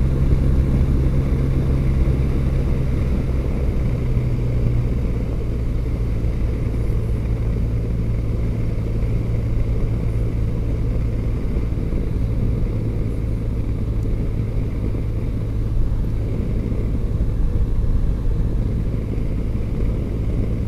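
Motorcycle engine running steadily at cruising speed, a continuous low drone with road and wind noise heard from on the bike.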